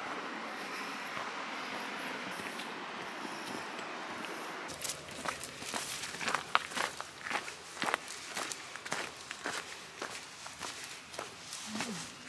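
A steady rushing noise for the first few seconds, then a run of footsteps: boots crunching over grass and gravel, with the loudest steps a little past the middle.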